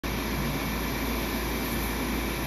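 CO2 laser cutter at work cutting an acrylic sheet: a steady whirring of fan and air-assist noise over a constant low hum.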